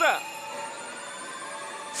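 A pachislot machine's electronic sound effect: a sustained, bright ringing tone that holds steady, with parts of it slowly rising in pitch, as the machine enters its high-probability zone.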